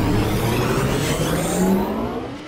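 Sustained, swelling intro effect of a soundtrack: a wash of noise over a low hum, with a tone that slowly rises in pitch, much like a car engine revving up.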